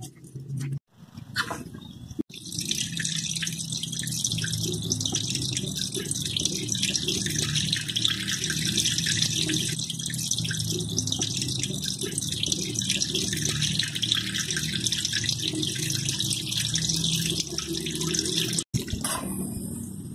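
Water pouring steadily and splashing into a partly filled concrete fish pond as it is refilled. It starts abruptly about two seconds in and cuts off shortly before the end.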